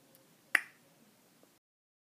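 A single sharp click about half a second in, loud against faint room noise, with a fainter tick just before it. The sound then cuts off suddenly.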